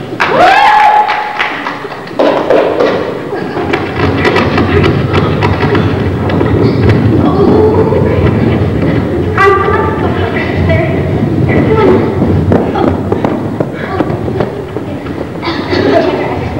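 Several voices calling out over one another, with repeated thumps and knocks.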